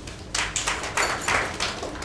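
Scattered hand-clapping from a small audience, many irregular claps starting about a third of a second in.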